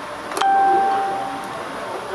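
A single ding: a sharp strike about half a second in, then one clear ringing tone that fades over about a second, over a steady background hum.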